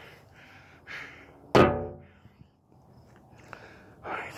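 A single hard knock on metal about a second and a half in, ringing briefly before it fades, with a soft breath shortly before it.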